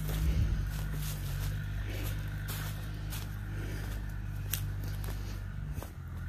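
Footsteps crunching and rustling through dry fallen leaves at an irregular walking pace, over a steady low engine drone.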